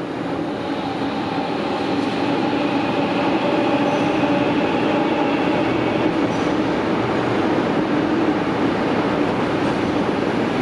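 Sydney Trains double-deck electric train running past. The sound swells over the first few seconds and then holds steady, with a steady whine running through the rumble of the cars on the rails.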